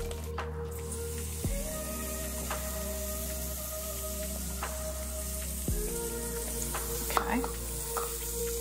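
Oil and batter sizzling on the hot nonstick plates of a Cuisinart Double Belgian waffle maker: a steady hiss that stops about a second before the end.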